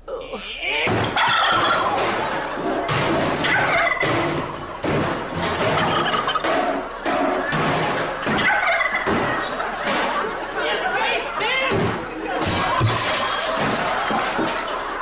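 A live turkey gobbling again and again, with voices and crowd noise underneath.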